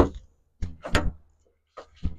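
A few short clunks and clicks from a Maruti car's door being handled.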